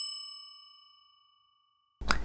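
A single bell-like ding, a transition sound effect, struck once and left to ring. Its high shimmer fades within the first second while a lower, clear tone lingers.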